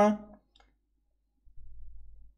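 A man's speech trailing off, then near silence broken by a brief faint low rumble about a second and a half in.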